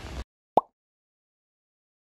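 A single short 'plop' sound effect about half a second in: a quick rising blip, laid over an edited title-card transition. Just before it, the rainy outdoor background noise cuts off abruptly, leaving dead silence on either side of the blip.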